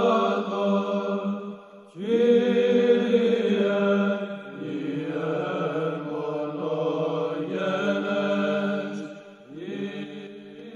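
Slow sung chant in long held notes: one phrase fades out about two seconds in, a new one begins at once and runs on, and another short break comes near the end.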